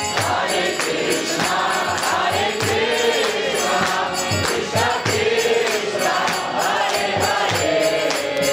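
Kirtan: a congregation of many voices chanting together in call-and-response style devotional song, with percussion keeping a steady beat.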